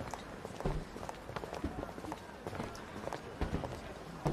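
Footsteps of hard-soled shoes on pavement, an irregular run of short clicks over a low street background.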